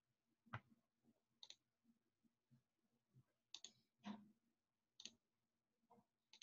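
Faint computer mouse button clicks, about six of them at irregular intervals, as links and folders are clicked through in a web browser.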